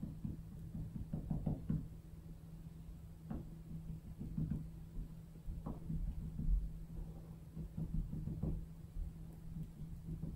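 A cotton bud dabbing paint dots onto paper on a table: a series of soft, irregular taps. A steady low hum runs underneath.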